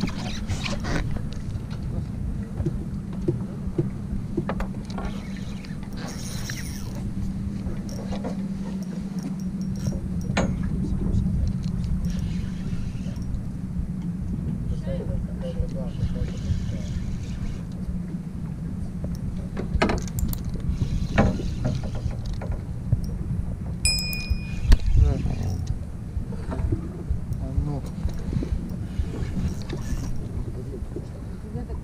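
Spinning reel cranked steadily as a hooked fish is reeled in from a boat, with a steady low hum underneath and occasional knocks of handling and of the rod against the boat.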